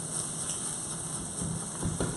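Salmon frying in a hot pan: a steady sizzle.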